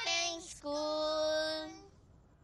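A child's voice singing long held notes: a short note, a brief break, then a lower note held for about a second that fades out just before the end.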